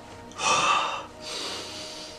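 A man gasping: one loud, strained, partly voiced breath about half a second in, followed by softer heavy breathing out.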